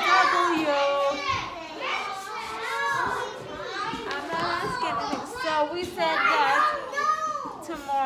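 Young children talking and calling out, several high voices overlapping.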